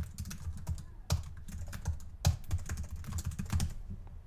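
Typing on a computer keyboard: a run of quick, irregular key clicks as words are typed in.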